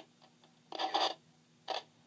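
Receiver audio from a homebuilt VK3YE Micro 40 DSB transceiver cutting out. Its hiss comes back in two brief bursts, a longer one before the middle and a short one near the end. The owner puts the dropouts down to a faulty switch in his amplifier.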